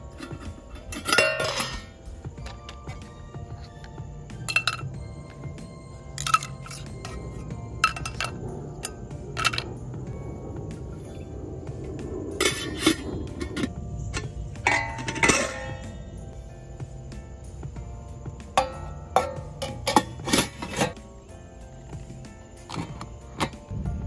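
Stainless steel pots, lids and plates of a Stanley Base Camp cook set clinking and knocking together as they are stacked and nested for packing: a dozen or so irregular metal knocks with short ringing, the loudest about a second in and around fifteen seconds in. Background music plays underneath.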